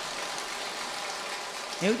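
A pause in a man's talk, filled with a steady, even background hiss; he starts speaking again near the end.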